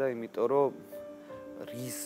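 A man's voice speaking briefly, then soft background music with long held notes under a pause in the talk.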